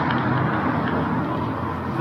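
Steady outdoor street noise: a low, even rush with no clear pitch, easing slightly toward the end.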